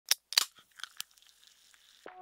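A quick run of five or six sharp, crunchy clicks in the first second, the loudest near the start, then near quiet.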